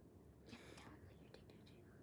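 Near silence: room tone, with a faint whisper about half a second in.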